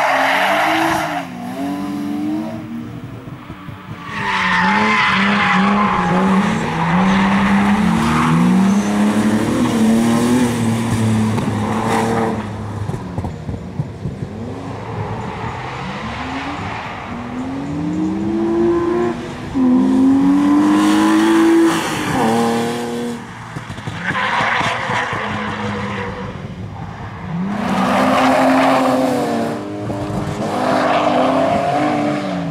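BMW E36 saloon's engine revving hard and dropping back over and over through gear changes and lifts, with several bursts of tyre squeal as the car slides through corners.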